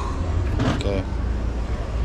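Steady low rumble of street noise, with a short burst of a nearby voice about half a second in.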